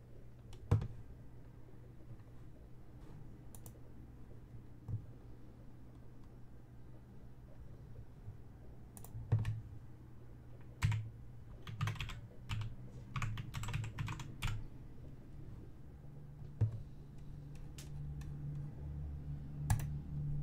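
Typing on a computer keyboard: a run of keystrokes in the middle, with a few single clicks before and after.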